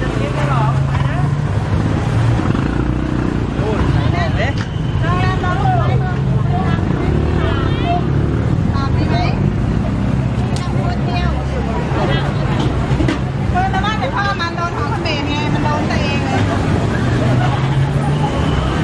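Busy street-market ambience: several people talking in the background over a steady low hum of motor traffic.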